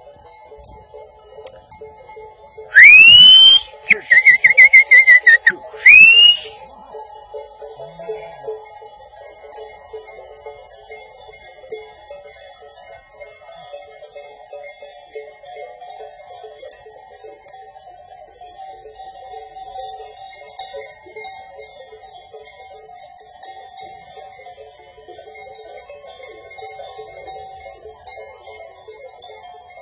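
A person's loud, sharp whistle at a flock of sheep: a quick rising whistle, about two seconds of a warbling, fluttering whistle, then a second rising whistle. A faint steady background runs underneath.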